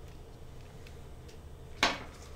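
Plastic handling of an IV secondary infusion set and medication bag: a few faint ticks, then one sharp plastic snap near the end, over a low steady room hum.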